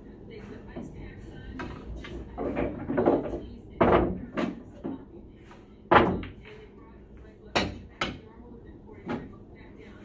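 Pool balls clacking against each other and knocking on the table as they are handled and rolled out onto a pool table. There is a string of sharp clacks through the second half, the loudest about six seconds in.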